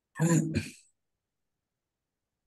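A person clearing their throat once, briefly, in two quick parts.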